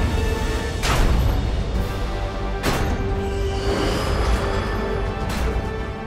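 Tense film score over a deep rumble, broken by three heavy impacts about one, three and five and a half seconds in: blows slamming against a heavy metal walk-in cooler door that is being held shut.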